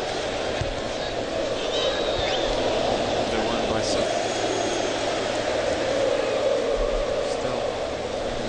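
Steady murmur of a football stadium crowd.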